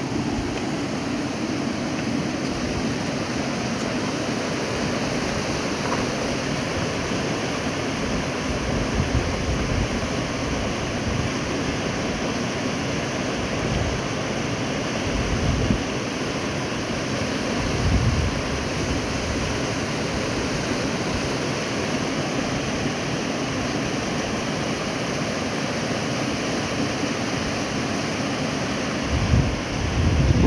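A muddy mountain river in flood, rushing steadily over stones, with wind buffeting the microphone in a few short gusts.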